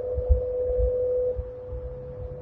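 Hong Kong Light Rail car moving off, with a steady hum held at one pitch that is strongest for the first second or so and then fades. Under it are irregular low knocks and rumble from the wheels on the track, the loudest about a third of a second in.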